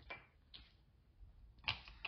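A few faint clicks and light handling noises of small objects being moved on a bench, with one short, louder sound near the end.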